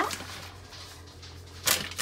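Shredded mozzarella being sprinkled by hand onto a metal sheet pan: a faint rustle, then a brief scratchy rustle near the end.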